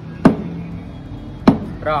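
Two sharp chopping knocks about a second and a quarter apart, a blade striking down onto a counter or board, each with a short low thud. A short spoken syllable comes just before the end.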